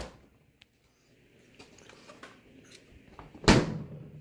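Samsung French-door refrigerator door swung shut, one thump about three and a half seconds in.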